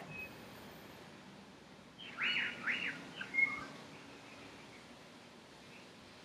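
A bird chirping: a brief run of a few quick high notes about two seconds in, over faint background hiss.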